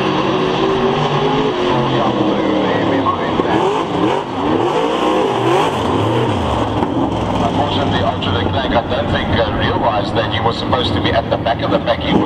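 V8 dirt-track race car engines running, with several rising and falling sweeps in pitch about three to six seconds in as cars rev and pass.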